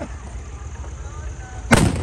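A Diwali firecracker going off with one sharp, loud bang near the end.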